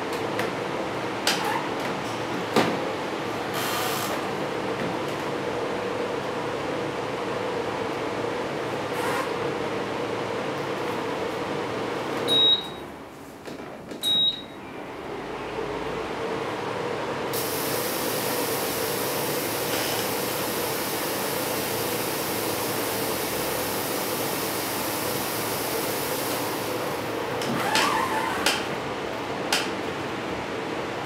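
The Corsair 700D case's stock fans run with a steady whirring hum. A little past the middle the hum briefly drops, with two short high beeps, then comes back. A steady high hiss joins for about ten seconds, and there are a few light knocks near the start and near the end.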